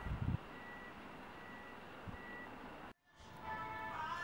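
A few knocks of a knife on a wooden cutting board at the start, then a faint background with a thin high beep that comes and goes. The sound cuts out completely for a moment about three seconds in.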